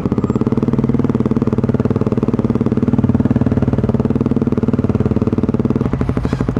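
A BMW G650 Xchallenge's single-cylinder thumper engine runs steadily at low revs. Its firing strokes come as a rapid, even pulse, with no revving.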